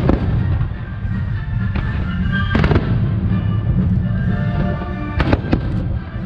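Fireworks bursting: a sharp bang at the start, another about two and a half seconds in, and two close together near the end, over a steady low rumble.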